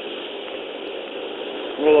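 Steady hiss on a police dashcam audio track, then a man loudly says "Roll" near the end.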